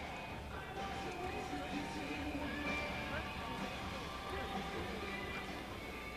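Faint background music with faint voices underneath.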